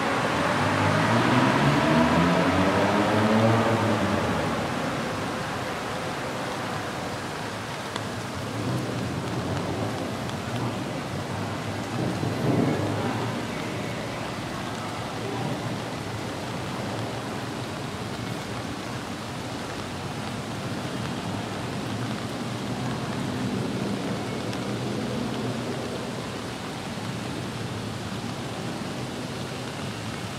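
Steady rain, a constant hiss. In the first few seconds a vehicle passes, its engine tone falling in pitch as it goes by, and fainter traffic swells again around the middle and later on.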